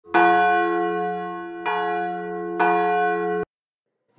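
A bell struck three times, the second about a second and a half after the first and the third about a second later, each stroke ringing on with many overtones and slowly fading. The ringing cuts off abruptly about three and a half seconds in.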